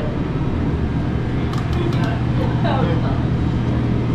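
A steady low mechanical hum runs throughout, with a few short bits of voice in the middle.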